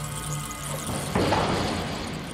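Sustained background music, then about a second in a rushing swell of noise that fades away: a whoosh transition effect.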